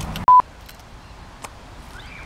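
One short, loud electronic beep at a single pitch about a third of a second in: a censor bleep laid over a word in editing. Quiet background with a few faint clicks follows.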